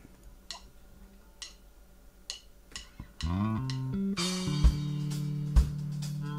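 Funk band music: a few sparse ticks, then electric bass guitar and drums come in about three seconds in.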